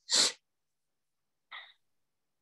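A person's short, breathy exhale just at the start, then a fainter, shorter breath about a second and a half in.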